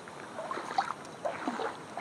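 Faint sloshing and splashing of shallow water as a child wades through a flooded rice field.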